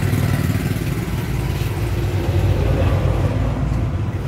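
A steady low engine rumble, running evenly throughout with no change in pitch.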